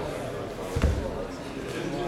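Voices talking, with one low thump a little under a second in.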